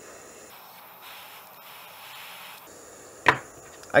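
A butane torch flame hisses faintly and steadily. About three seconds in comes one sharp clack as steel needle-nose pliers are set down on a wooden workbench.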